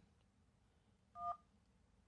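A single dial-pad touch tone from a OnePlus 3T smartphone's speaker as the '1' key is pressed in the phone app: one short two-note beep about a second in.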